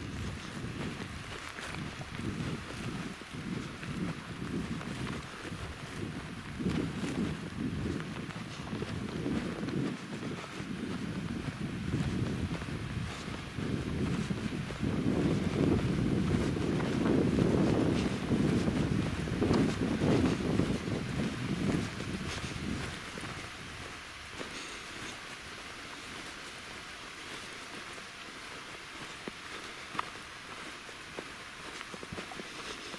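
Wind buffeting the microphone in gusts, building to its strongest midway and easing near the end.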